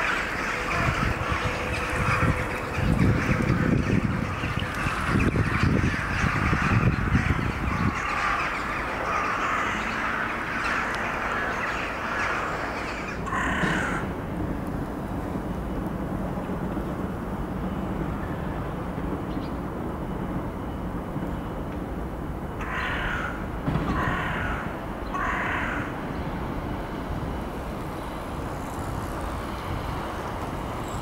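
A large flock of crows calling at their roost: a dense, continuous chorus of caws for the first half, thinning to single caws, with three in a row a little after twenty seconds.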